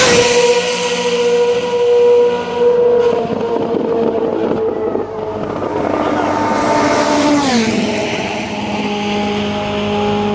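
Race car engines passing at speed. A car that has just gone by fades away with its high engine note dropping in pitch. Then a second car approaches and sweeps past about three-quarters of the way in, its note falling sharply, and its engine runs on steadily afterwards.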